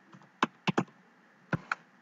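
Keystrokes on a computer keyboard: about five short, sharp key clicks in an irregular run as a word is typed.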